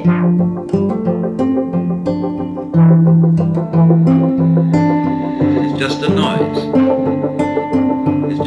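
Instrumental music led by plucked guitar notes over sustained low notes, changing pitch every half-second or so.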